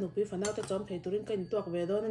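A metal spoon clinking and scraping against a ceramic bowl of porridge, with a woman talking over it.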